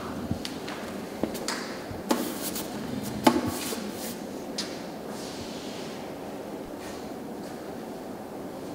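A handful of sharp knocks and clunks, the loudest about three seconds in, then only the steady hum of the room.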